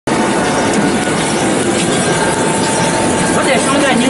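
MG70-8 dough ball divider rounder running: a steady mechanical noise with a thin, steady whine.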